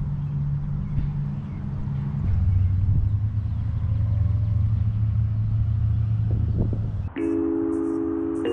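A motor vehicle's engine running steadily, its hum dropping in pitch and growing a little louder about two seconds in. Near the end it cuts off and chiming music begins.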